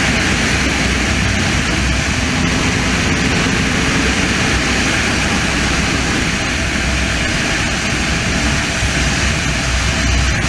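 Heavy wind noise on the microphone over the steady drone of a Yamaha R1's inline-four engine running at high road speed.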